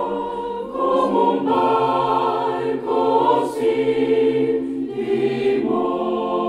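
Mixed choir of women's and men's voices singing held chords, moving to a new chord about every two seconds.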